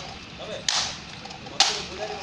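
Two sharp cracks of parade-ground drill by a guard of honour, about a second apart, each ringing briefly in the courtyard.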